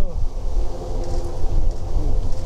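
Steady low outdoor rumble with a faint hum, between a man's words at the start and end.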